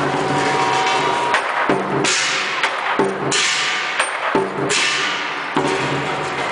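Lion dance percussion: a big lion drum played with crashing cymbals. About a second and a half in, the accompaniment breaks into a run of sharp strikes. Three long, bright crashes follow, each ringing for about a second before being cut short.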